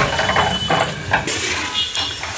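Irregular mechanical clattering and rattling of construction-site machinery, with a thin high whine for about a second near the start.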